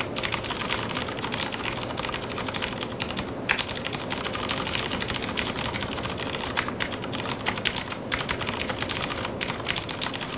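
Fast touch-typing on a Das Keyboard S Professional mechanical keyboard: a dense, continuous run of rapid key clicks with a brief pause about three and a half seconds in.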